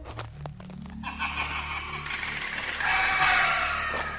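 Tall dry grass rustling and scraping as it is pushed aside by hand, growing louder about three seconds in, over soft background music.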